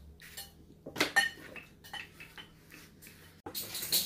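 Dishes and metal baking tins being handled on a kitchen table: a few clinks and knocks, the loudest a pair about a second in, with lighter clicks after.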